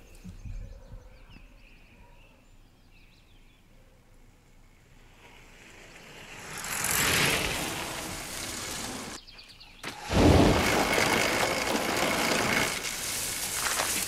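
A TV episode's soundtrack playing through speakers: a quiet outdoor street ambience with faint birdsong, then a swelling rush of noise about six seconds in. It breaks off briefly near nine seconds and comes back as a louder, steady rushing noise.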